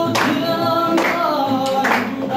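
Singing accompanied by a strummed acoustic guitar, with long held notes.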